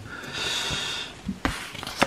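A short breathy exhale, like a sigh, lasting under a second, followed by a light tap about a second and a half in.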